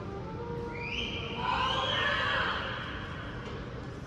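A single high-pitched whoop, rising at first and then held for about two seconds, over a steady low hum of crowd and room noise.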